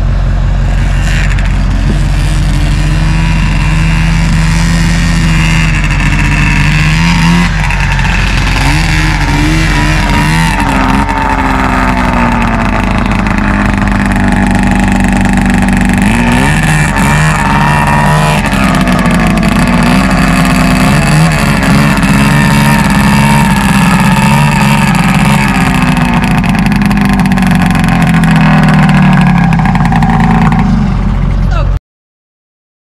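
Arctic Cat snowmobile engines running on a truck-bed deck, revving up and down in repeated swells as the sleds are maneuvered, over a steady low engine drone.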